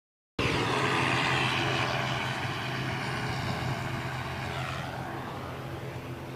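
Aircraft engine running close by, with steady low tones and a high hiss, slowly fading as it moves away. Around the middle a pitch drops.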